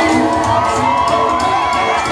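A crowd cheering and shouting, with many high-pitched voices among it, over dance music.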